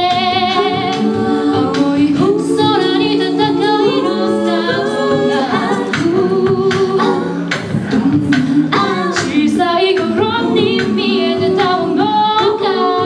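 A six-voice female a cappella group singing in close harmony through microphones, with short sharp percussive clicks running through the singing.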